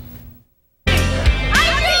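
After a brief cut to silence, loud TV news-show bumper music starts abruptly just under a second in, with a crowd cheering and shouting beneath it.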